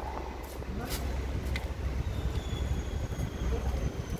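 City street background: a steady low rumble of traffic, with a few short sharp clicks and a faint high thin tone in the second half.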